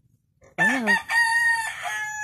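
A rooster crowing: one long call in several parts, beginning about half a second in.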